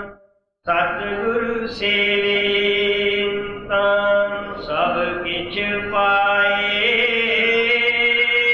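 A man's voice chanting a devotional verse in long held notes that slide between pitches, with a short break for breath just after the start.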